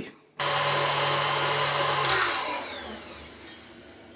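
Electric tilt-head stand mixer running its wire whisk at high speed through egg whites and sugar for meringue. It starts suddenly, then is switched off about two seconds in, and its whine falls away as the motor spins down, the meringue whisked to stiff, glossy peaks.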